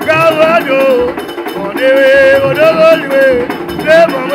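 A Vodou ceremonial song: one voice singing in short phrases that bend up and down, over barrel drums played by hand, with a metallic clink in the rhythm.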